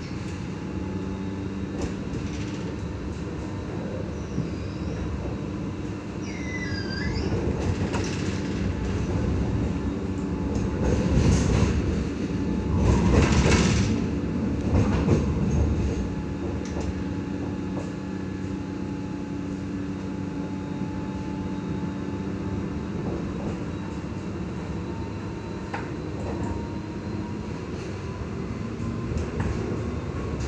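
Ride noise inside a Sydney L2 light rail vehicle (Alstom Citadis X05 tram) running on street track: a steady motor and rolling hum, louder with wheel and track noise for a few seconds around the middle, and a faint whine rising slowly in pitch later on.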